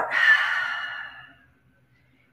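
A woman sighing out a long breath through an open mouth, a deliberate relaxing exhale that fades away over about a second and a half.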